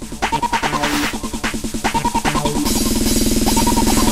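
Instrumental electronic dance music: a repeating synth figure over a steady drum beat. About two-thirds of the way in it breaks into a fast snare roll that builds toward the next section.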